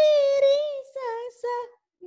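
A woman singing Indian classical sargam phrases over a video call: a rising note held for most of a second, then two short notes, ending just before the two-second mark.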